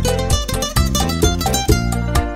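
Instrumental bachata: a plucked lead guitar picking quick runs of notes over bass and percussion.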